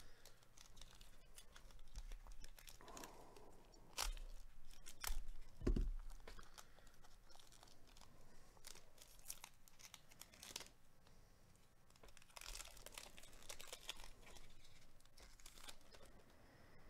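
Trading-card pack wrapper being torn open and crinkled by hand, with scattered crackles and a denser stretch of crinkling near the end. There are a couple of soft knocks about four and six seconds in.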